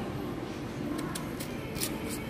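Faint, soft scrapes and ticks of a kitchen knife cutting into the tough skin of an unripe green banana, over low room noise.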